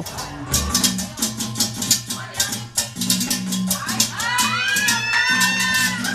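A metal güira scraped in rapid, even strokes along with Latin dance music that has a steady bass line; a singing voice comes in about four seconds in.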